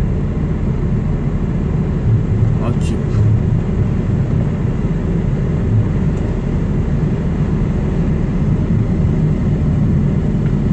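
Heavy truck's diesel engine running low and steady as the truck creeps along in slow, backed-up traffic.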